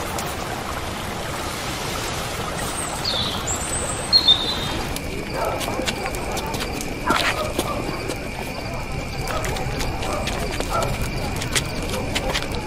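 Background ambience from a film soundtrack. It opens as a quiet outdoor hush with a few short bird chirps. About five seconds in it changes to a night-street atmosphere: a steady high tone, scattered clicks and knocks, and faint murmuring voices.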